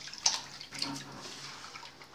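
Hands swishing and rubbing mustard seeds in a basin of water as the seeds are washed: wet sloshing, with a sharper splash about a quarter second in and a smaller one near one second.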